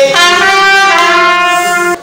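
A trumpet played live, holding two long notes, the second slightly lower, cut off suddenly at the end.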